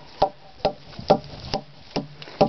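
A mallet pounding a debarked ash log: five evenly spaced strikes, about two a second. It is beating the log along its length to loosen the growth rings so that splints can be torn off for basket making.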